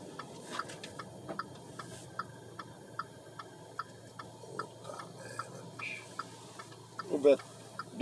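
Car turn-signal indicator clicking steadily inside the cabin, about three clicks a second, over low engine and road hum.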